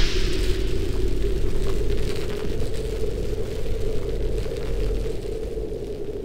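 Cinematic end-card sound effect: a deep rumbling drone with a steady low hum, slowly fading out.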